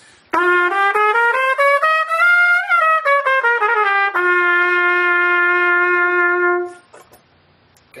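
Trumpet playing the G Aeolian (G natural minor) scale one octave up and back down in separate notes, ending on the bottom note held for about two and a half seconds.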